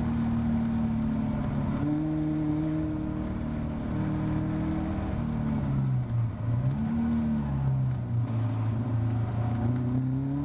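Caterham Seven race car's engine heard from the open cockpit, its revs changing as the car slows from about 62 to 32 mph: the pitch steps up about two seconds in, dips and recovers around six seconds, and settles lower near the end.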